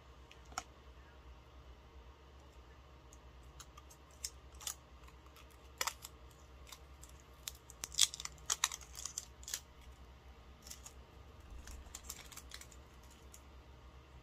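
Scattered clicks and taps of hands working at a lipstick's packaging to get it open, coming thickest about eight to nine and a half seconds in, over a faint low steady hum.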